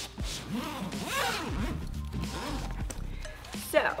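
The zipper of a Think Tank Photo Video Transport Rolling Bag being pulled around the lid to open it, in several strokes, over background music.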